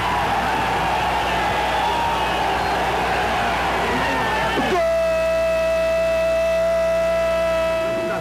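Football commentator's long drawn-out goal shout, held on one high note for almost five seconds. It then drops in pitch into a dead-steady held tone that runs on to the end.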